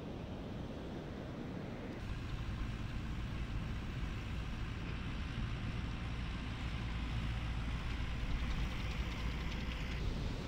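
Heavy ocean surf breaking: a steady rumble with hiss that gets deeper and louder about two seconds in.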